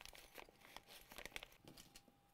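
Near silence: room tone with faint, scattered small clicks and crinkles.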